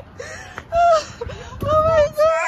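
A woman's drawn-out, excited cries amid laughter: two long wordless vocal sounds, one about a second in and one near the end.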